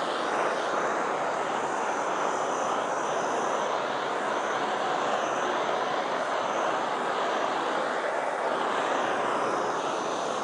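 Handheld gas torch burning with a steady hissing rush, its tone shifting slightly as the flame is swept low over freshly poured, still-wet epoxy.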